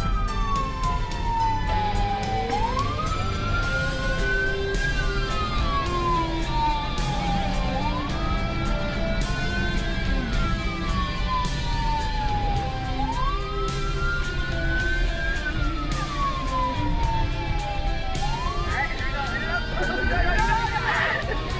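Police car siren on a slow wail, rising and falling about once every five seconds, heard from inside the moving car's cabin with its engine running underneath.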